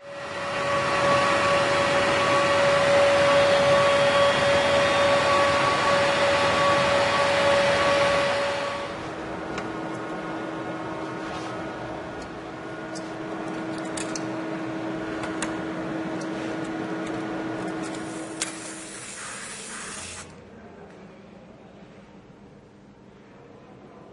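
CNC PCB milling machine running: a loud high-speed spindle whine with steady pitched tones. About nine seconds in it drops to a quieter, lower whine with occasional clicks, then cuts off shortly before the end.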